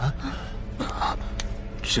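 A woman's short, breathy gasps of worry, over a low steady rumble.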